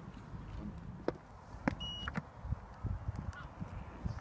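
A single short, high electronic beep about two seconds in, set among a few sharp clicks and low rumbling knocks of wind and handling on the microphone.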